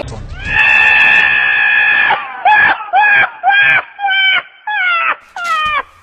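A donkey braying: one long held note, then a quick run of shorter calls, each sliding down in pitch.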